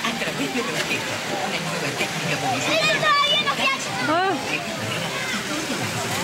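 High-pitched voices calling out, with a couple of brief shouts about three and four seconds in, over a steady wash of water noise.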